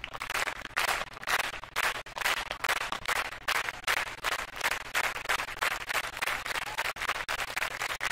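Black plastic wrapper crinkling and crackling as hands work it open to pull out an encased card, a fast, irregular run of crackles.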